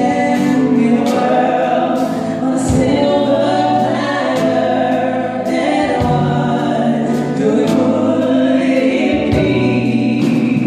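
A man and a woman singing a pop ballad duet into handheld microphones, amplified in a hall, over piano accompaniment.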